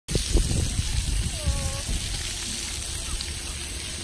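Splash-pad water jets and sprayers running with a steady hiss of falling water. A child's short distant call comes about a third of the way in.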